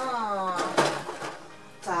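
A woman's voice over background music, with a short rustle about a second in as a cardboard advent-calendar window is opened and the item inside taken out.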